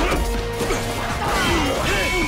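Sword-fight sound effects: metal blade clashes and hits, with a sharp strike right at the start, over driving action music.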